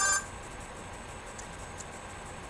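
The last note of a short electronic beeping melody cuts off just after the start, leaving low steady room noise with a few faint clicks.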